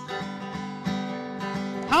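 Acoustic guitar strumming chords in a steady rhythm, about two strums a second, with a man's singing voice coming in near the end.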